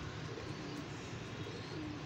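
Domestic pigeons cooing, a few short low coos over steady background noise.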